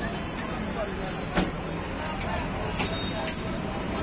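Busy street ambience: steady traffic noise and indistinct background chatter, with a few sharp clicks or knocks.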